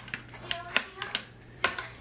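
Hard plastic parts of a stick vacuum clicking and knocking as they are handled and fitted together: a string of short, sharp clicks, the loudest a little before the end.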